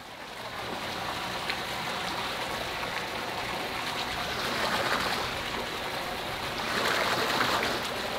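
Steady rush of running water in an above-ground pool, swelling slightly about five and seven seconds in.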